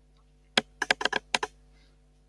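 Typing on a computer keyboard: a quick run of about eight keystrokes over about a second, starting about half a second in, over a faint steady hum.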